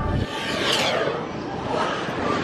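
Onboard ride music cuts off just after the start. A rushing wind noise with a falling whoosh about half a second in follows, as the Test Track ride vehicle speeds out of the building onto its outdoor high-speed loop.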